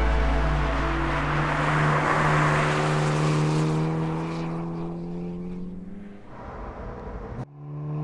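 Hyundai Kona N's turbocharged four-cylinder engine and tyre noise as the car drives past and away. The engine note sinks slowly in pitch and fades out over about six seconds.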